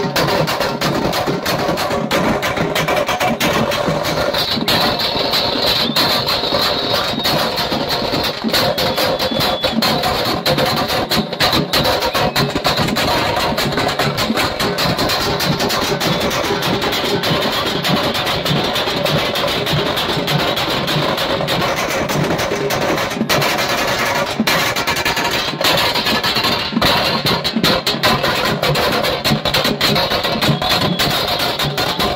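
Loud procession music of drums beaten in a fast, continuous rhythm, going without a break.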